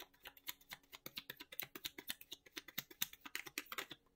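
A deck of tarot cards being shuffled by hand in an overhand shuffle: a rapid, uneven run of soft card clicks and slaps, several a second, that stops just before the end.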